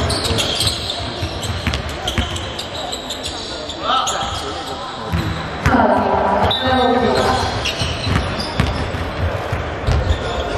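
A basketball being dribbled on a hardwood gym floor, with repeated bounces echoing in a large hall. Onlookers' voices are heard throughout, and a voice calls out loudly about six seconds in.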